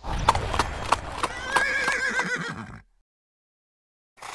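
A horse whinnying, a wavering call from about a second and a half in, over a run of hoof clip-clops. It all stops just before three seconds in.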